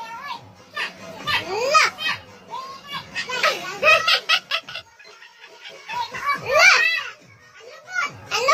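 Young children shouting and squealing in high voices that sweep upward in pitch, in a few separate bursts, over music.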